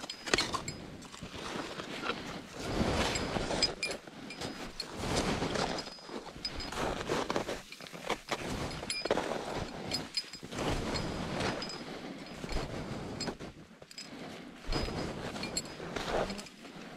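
Crampon-shod mountaineering boots stepping into steep snow, a crunching step about every second, with an ice axe planted and carabiners on the harness clinking.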